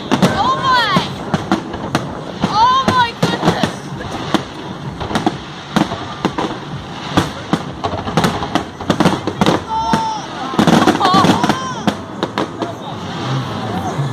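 Aerial fireworks going off: a rapid, irregular run of bangs and crackles, with people's voices calling out over them now and then.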